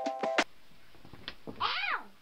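Background music with a steady beat cuts off about half a second in. Near the end comes one short high-pitched cry that rises and falls in pitch.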